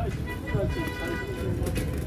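Open-air market ambience: a steady low rumble with faint, distant voices of shoppers and vendors, one of them briefly holding a call in the middle.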